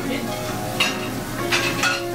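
Food sizzling in a commercial kitchen as a steady hiss, with a brief sharp clatter a little under a second in.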